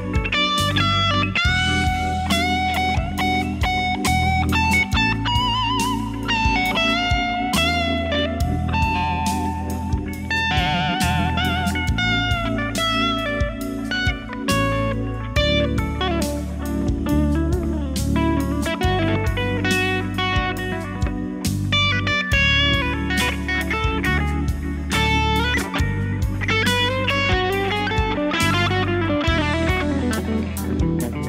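Gibson ES-335 1963 Reissue semi-hollow electric guitar played through an original 1963 Fender Vibroverb amp: single-note lead lines with string bends and vibrato.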